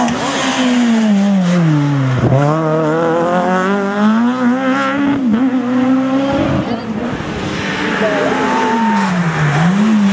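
A Renault Mégane rally car's engine drops in pitch as the car slows for a bend, then climbs steadily as it accelerates away up the stage. Near the end a second rally car, a Peugeot 205, comes up with its engine revving.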